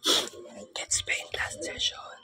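A person whispering: short breathy bursts of unvoiced speech, the first and loudest at the very start.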